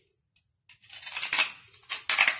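Aluminium foil cup crinkling in the hands, an irregular crackle that starts about two-thirds of a second in.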